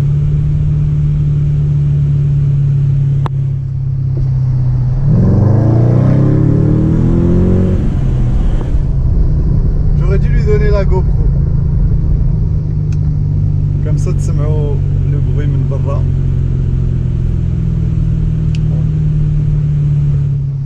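Mercedes E550 coupé's V8 heard from inside the cabin, cruising with a steady low drone, then accelerating for about three seconds around five seconds in, its pitch rising, before settling back to a steady cruise. The engine is running on a freshly fitted set of eight spark plugs.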